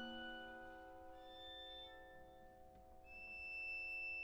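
Soft violin and piano music: held notes fade away, new quiet notes come in about a second in, and a high note is held softly near the end.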